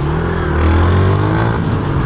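Motorcycle engine heard from the rider's seat while riding, its pitch rising a little and then easing off about one and a half seconds in.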